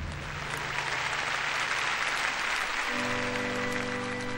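Concert hall audience applauding. Near the end a held instrumental chord begins under the applause.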